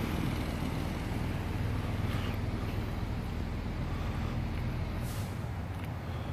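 Road traffic passing on a nearby street: a steady low rumble of engines and tyres, with a short hiss about five seconds in.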